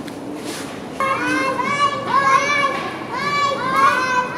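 Young children calling out from below in high-pitched, sing-song voices, several rising-and-falling calls in a row starting about a second in.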